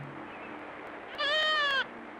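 A goat bleating once, a single call of under a second that starts just past the middle and dips in pitch at its end.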